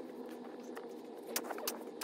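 Snow shovel digging and scraping packed snow off a buried car, the audio sped up about five times, heard as a steady hiss with a few sharp clicks in the second half.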